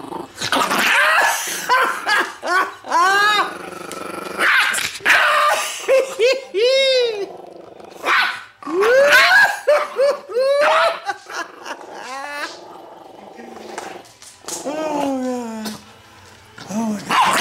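Chihuahua growling and snarling in quick bursts, broken by short high-pitched barks and yips: guarding its bone.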